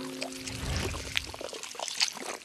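Quiet cartoon sound effects: scattered light clicks and rustles, with a held music note dying away in the first half-second.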